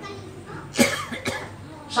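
A man coughing twice, a sharp cough a little under a second in and a smaller one about half a second later.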